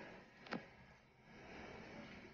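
Near silence with a single short click about half a second in.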